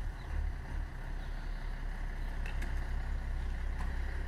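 Star 244 fire truck's diesel engine running at low revs as the truck creeps out of the station bay: a steady low rumble.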